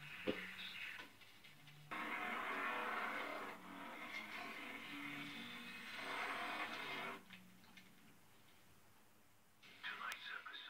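Opening-credits theme music of a horror TV series playing from a television's speaker, a rough, noisy texture over a few steady low tones. It swells in loud stretches and fades down over the last few seconds.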